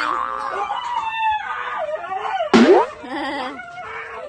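Siberian huskies play-fighting and vocalizing in wavering, pitched cries. One sharp, loud rising cry comes about two and a half seconds in.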